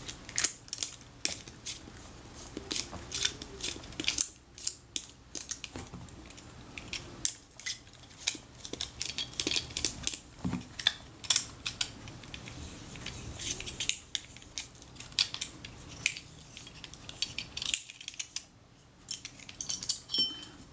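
Irregular light metallic clicks, ticks and scraping as the conical front retainer of a Schneider Xenon 50mm f/1.9 lens is unscrewed by hand with a friction tool, metal parts shifting against each other.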